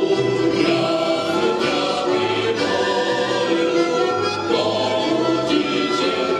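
Mixed folk choir of women's and men's voices singing a Ukrainian folk song in full harmony, accompanied by accordion and a double bass playing a moving bass line.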